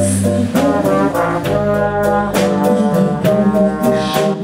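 A big band's brass section playing a jazz number, trombones and trumpets in sustained chords that change every half second or so.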